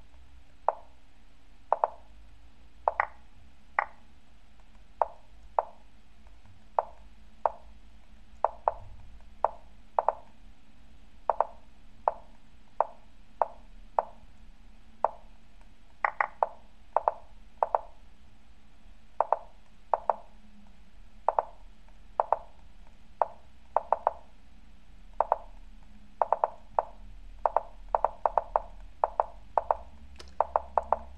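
Lichess online chess move sounds: short wooden clacks, one for each move of a fast bullet game, coming about two a second. They crowd together near the end as both clocks run down in a time scramble.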